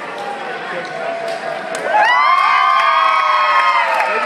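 Spectators shouting and cheering, with many voices rising together in a loud burst about two seconds in and held for about two seconds, over a background murmur of voices.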